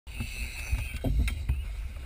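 Muffled low rumble of wind and water sloshing at the sea surface beside a dive boat, with a couple of light knocks about a second in.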